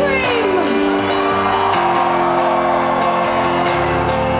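Live band music through a large concert sound system, heard from within the audience: held keyboard chords that change about halfway through. Audience members whoop and shout over it, with a falling cry near the start.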